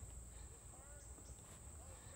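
Near silence, with a faint, steady, high-pitched insect chorus.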